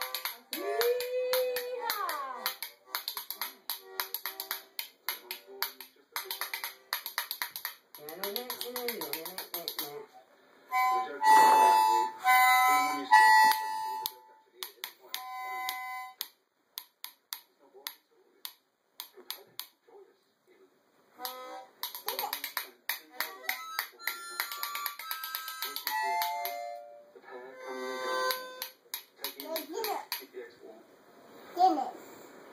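Harmonica blown in short held notes and chords, loudest a little before the middle, with a run of separate notes stepping down in pitch near the end. Throughout, quick clicking that fits a pair of spoons being rattled runs alongside.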